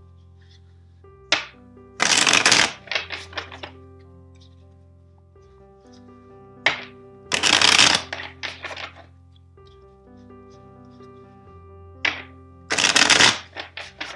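A tarot deck being riffle-shuffled by hand three times, about five seconds apart: each time a sharp tap, a brisk riffle under a second long, then a short patter of cards settling as the deck is bridged back together. Soft background music with sustained notes plays underneath.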